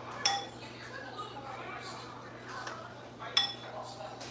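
A metal ladle clinks against the cooking pot twice, about three seconds apart, each strike ringing briefly, while foam is skimmed off a simmering beef broth.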